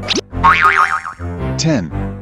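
Bouncy children's background music with cartoon sound effects over it: a quick upward glide at the start, a wobbling, warbling tone, then a falling glide near the end.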